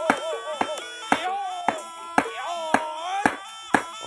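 Barongan mask's hinged jaw being clacked shut again and again, about twice a second, over background music with a wavering melody.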